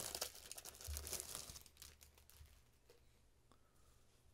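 Thin plastic packaging crinkling and crackling as it is handled and opened by hand, busiest in the first two seconds, then dying down to faint rustles.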